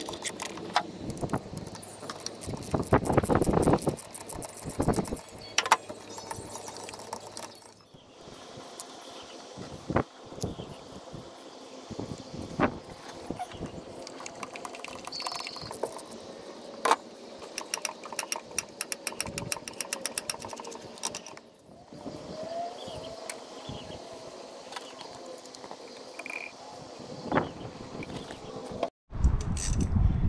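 Hand ratchet clicking in quick runs as spark plugs are screwed in and tightened, with occasional metal clinks of the socket and extension against the engine. The sound comes in several separate bursts.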